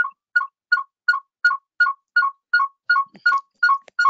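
A repeating two-note electronic beep, a higher note then a lower one, nearly three times a second, coming through the video-call audio. It is a fault in the presenter's sound.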